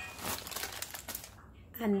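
A plastic chocolate-chip packet crinkling as it is handled and set aside, fading out after about a second.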